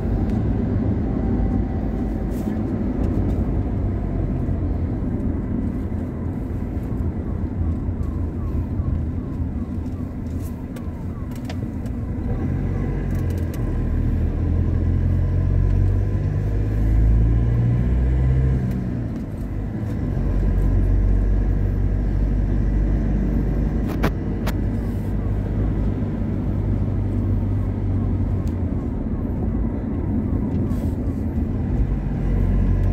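Road noise inside a moving car's cabin: a steady low rumble of tyres and engine at cruising speed, swelling and easing slightly partway through, with a single sharp click later on.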